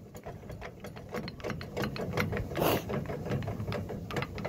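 Trailer tongue jack being hand-cranked to raise the trailer tongue: a steady run of quick mechanical clicks from the jack's gears.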